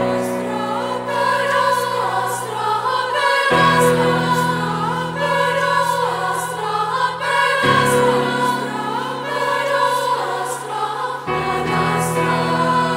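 A high school choir, mostly young women's voices, singing sustained chords in a reverberant church. The harmony shifts to a new held chord about every four seconds.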